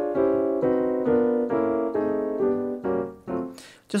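Piano playing a series of chords struck about twice a second, each left to ring and fade; the first is a D diminished major seventh chord (D, F, A-flat, C-sharp). The playing stops just before the end.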